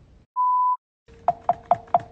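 A single short electronic beep, then from about halfway on quick, evenly spaced clicks, about five a second, over a faint steady hum.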